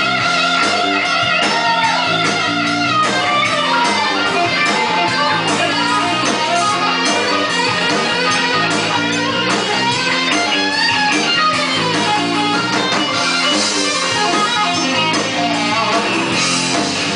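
Live band playing an instrumental passage: an electric guitar lead with held notes at first, then a run of bent, wavering notes over a steady rhythm accompaniment.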